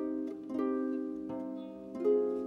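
Live chamber ensemble music led by a concert harp: three plucked notes, each ringing on and overlapping the last.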